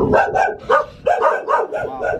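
H'Mông native dog barking in quick short barks, about three a second. The barking is the breed's wariness of strangers, which the visitors take as the proper instinct of a native dog.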